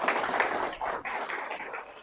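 Audience applause, a dense patter of many hands clapping that dies away over about two seconds.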